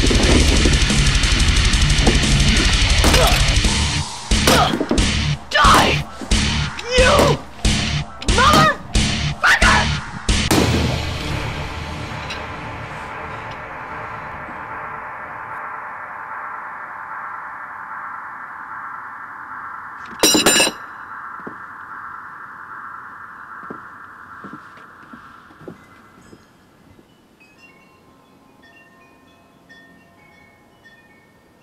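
Horror film soundtrack: loud heavy rock music with a run of sharp hits and cries that breaks off about ten seconds in. It leaves a held tone that slowly fades away, with one brief loud burst partway through and faint chiming tones near the end.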